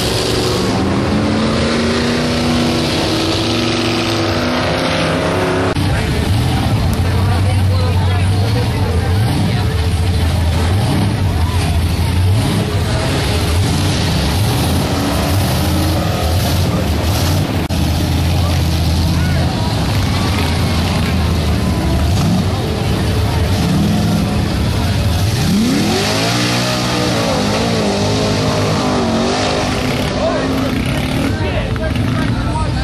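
Big off-road truck engines running loud and steady with a deep low rumble, and a truck revving up hard about four seconds before the end as it churns through the mud pit.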